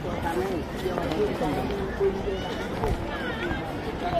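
A crowd of people talking at once, several voices overlapping into steady chatter.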